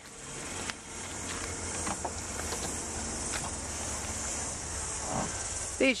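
Steady high-pitched insect chorus, crickets or cicadas, with a few faint clicks and a soft knock as the hatchback's tailgate is opened.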